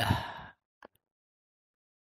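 A man's breathy exhale trailing off the end of a spoken word, followed by a faint mouth click, then dead silence.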